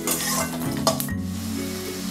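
Garlic and green chillies sizzling in hot oil in an aluminium kadai while a metal spatula stirs and taps against the pan. The sizzling breaks off sharply about a second in, then quieter frying continues.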